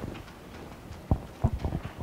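A few soft, short knocks: one about a second in, then a quick cluster of three about half a second later.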